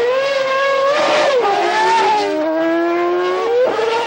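Formula One car's 2.4-litre V8 engine at high revs as the car drives past, a high-pitched scream. The pitch climbs, drops sharply about a second and a half in and again a second later, then rises quickly near the end.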